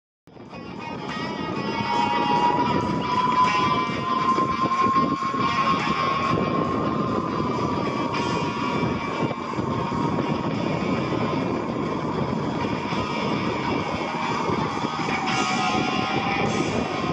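Music mixed with the steady drone of an aerobatic propeller plane's engine, its tone slowly rising and then falling in pitch. The sound fades in over the first couple of seconds.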